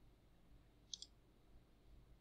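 Near silence with a computer mouse button clicked about a second in: a quick double click, press and release.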